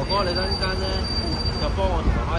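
Indistinct voices of people close by over a low rumble of street noise, with a steady high-pitched whine that stops shortly before the end.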